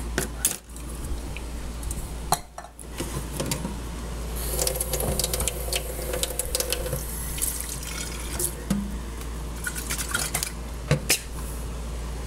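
Glassware and dishes clink, then water runs from a kitchen faucet into a stainless steel sink, starting about four seconds in, with more clinks and knocks over it.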